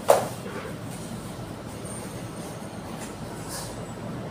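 A single short, sharp knock just after the start, the loudest thing here, dying away within a fraction of a second over a steady low background rumble.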